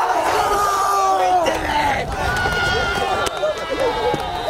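A group of football players shouting and cheering in celebration, many voices yelling over one another. A sharp click sounds about three seconds in.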